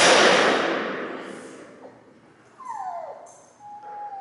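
Dog agility teeter board banging down onto the floor as the dog tips it past the pivot. The loud bang rings on and fades over about a second and a half in the large hall. A short, quieter falling whine follows about two and a half seconds in.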